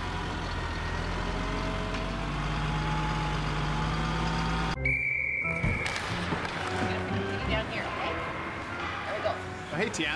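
A snowplow truck's engine runs with a steady low drone as its front plow blade pushes snow, then cuts off abruptly about halfway through. A short, steady high tone follows, then the mixed noise of an ice-hockey rink: sticks and skates on the ice and crowd voices.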